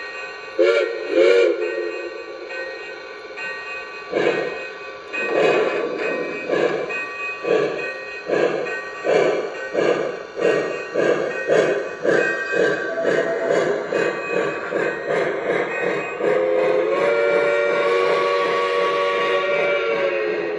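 Lionel Legacy Camelback 4-6-0 O-scale model steam locomotive's sound system: two short whistle toots, then steam chuffing that speeds up as the engine pulls away, and a long whistle blast near the end.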